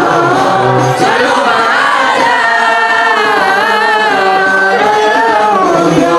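Group of boys and young men singing a sholawat (Islamic devotional song praising the Prophet) together, loud and melodic, with long wavering held notes.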